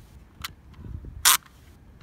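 The plastic clamp of a handlebar phone mount clicking as it is worked by hand. One faint click comes about half a second in, then a loud short snap a little past halfway, and a sharp click right at the end.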